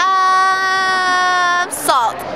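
A woman's voice holding one long, steady open-mouthed "ahh" for about a second and a half, then breaking off with a short falling sound near the end.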